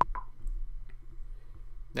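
A single sharp computer-mouse click at the start, then a steady low electrical hum with one faint tick just before the middle.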